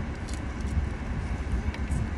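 Steady low rumble and hiss inside a car cabin, typical of the car's engine idling.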